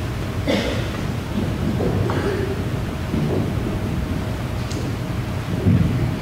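A choir rising to its feet and opening music folders: shuffling, rustling and knocks over a steady low rumble, with a louder thump near the end.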